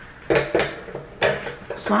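Knocks and scrapes of a small cardboard product box being handled and opened by hand. There are two sudden clattery bursts, about a third of a second in and just after a second.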